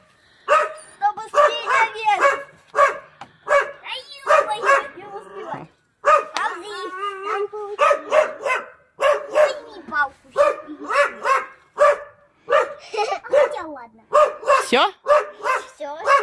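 A dog barking over and over, short high-pitched barks about two a second with a few brief pauses.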